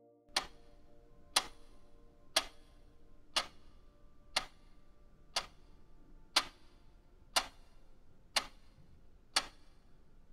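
Clock-tick sound effect of a quiz countdown timer, ticking steadily once a second, ten ticks in all, while the time to answer runs out.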